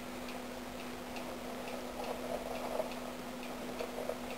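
Faint, regular ticking, like a clock, about two to three ticks a second, over a steady low hum.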